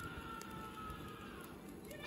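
Wood fire burning in a fireplace, with a few faint crackles and, over the first second and a half, a faint thin high tone that sinks slightly.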